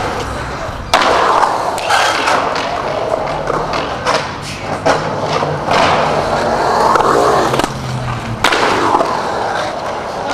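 Skateboard wheels rolling through a concrete bowl, the rolling sound swelling and fading with each pass. A sharp clack of the board hitting the concrete about a second in, with several more clacks later on.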